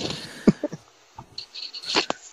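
The tail end of men's laughter: a few short chuckles fading out, then a soft breath.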